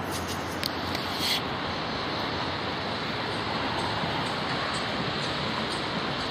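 Steady road traffic noise, an even rush of passing cars, with a few brief clicks in the first second and a half.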